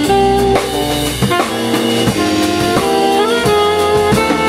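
Small jazz band playing live: an alto saxophone carrying the melody over keyboard, electric bass and drum kit, the saxophone sliding up into a note about three seconds in.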